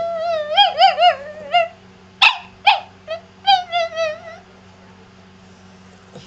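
A small chihuahua-type dog 'talking': a long whine that wavers up and down, then two sharp yips a little after two seconds in, then another shorter whine.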